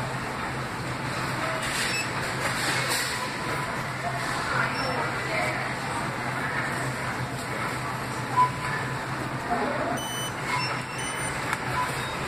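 Busy store ambience: a steady low hum under indistinct chatter, with a short electronic checkout beep about eight seconds in and a few fainter beeps near the end.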